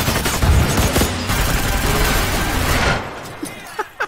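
A sustained volley of rapid gunfire, with bullets striking a car body and sparking off it. It is dense for about three seconds, then dies away near the end.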